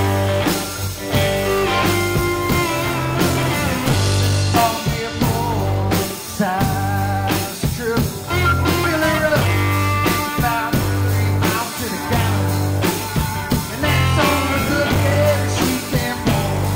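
Live blues-rock band playing: an electric guitar lead with bent, wavering notes over a steady bass pulse and drums.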